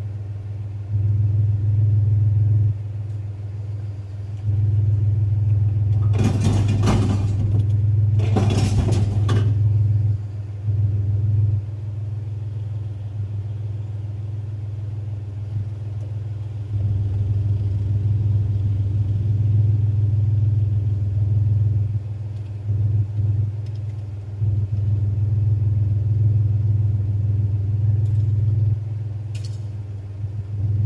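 Pickup truck engine idling, heard from inside the cab as a steady low rumble that swells and eases every few seconds. Two short rushes of noise break in, about six and eight and a half seconds in.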